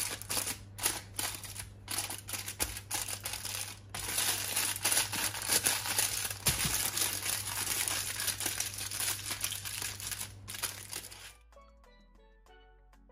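Aluminium foil crinkling and crackling in rapid bursts as hands fold and crimp a foil packet shut. It stops suddenly near the end, giving way to quiet steelpan music.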